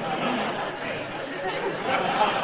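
Audience chattering, many overlapping voices murmuring at once.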